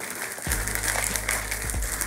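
Pillow-shaped cereal pouring from a bag into a plastic bowl, a dense rattle of many small pieces landing at once. Background music with a steady bass line runs underneath.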